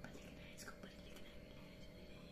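Faint whispering in the first second or so, over quiet room tone.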